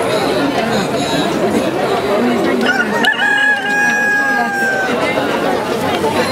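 A caged rooster crowing once: one long, held call of about two seconds starting halfway in, over the steady chatter of a crowd.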